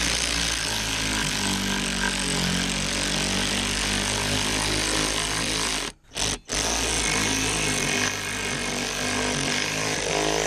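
WorkPro cordless 3/8-inch drive ratchet running under load, its motor driving a bolt on a metal bracket with a steady whir, cutting out briefly twice about six seconds in.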